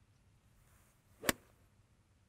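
A single sharp click of a golf club striking the ball, about a second and a quarter in; otherwise near quiet.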